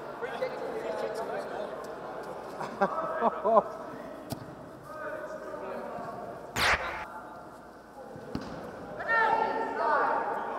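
A football being kicked and knocked about on an indoor artificial pitch, with a few sharp knocks and one loud echoing strike about two-thirds of the way in. Voices and short calls between the players can be heard around it.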